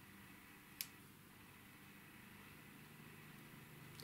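Near silence: faint room tone, with one light click a little under a second in.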